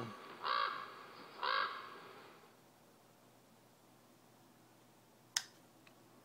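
A crow cawing twice, about a second apart, followed near the end by a single sharp click.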